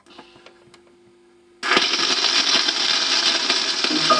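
78 rpm shellac record on a player: a few faint ticks, then about one and a half seconds in the needle meets the groove and a sudden loud, steady hiss and crackle of surface noise sets in, the run-in groove before the playing starts.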